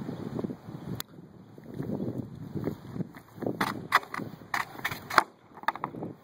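A long wooden pole knocking and clattering on asphalt: a quick string of sharp knocks in the second half, the loudest near the end. Wind rumbles on the microphone underneath.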